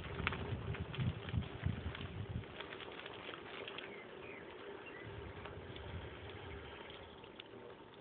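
Wind buffeting a phone's microphone in gusts for the first couple of seconds, with scattered clicks and rattles, then settling to a quieter outdoor hiss.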